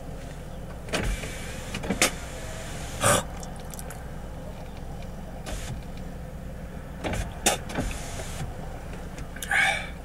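Handling noise inside a car cabin: a handful of sharp knocks and rustling as the person moves about in the seat, over a steady low hum.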